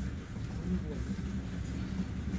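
Steady low drone of a 2M62 diesel locomotive's engine, muffled through a window glass.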